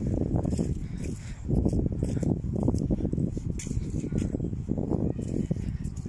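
Footsteps on grass strewn with dry leaves at a walking pace, over a loud, uneven low rumble on the phone's microphone.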